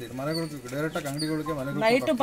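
A man's voice talking without a pause, with short high chirps repeating faintly behind it.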